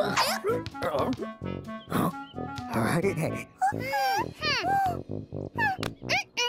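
Cartoon characters' wordless squeaky vocalizations over playful background music, with a quick run of rising-and-falling squeaks about four seconds in.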